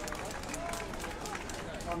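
Crowd of protesters in the street murmuring, several voices talking at once in the background, with a few scattered claps.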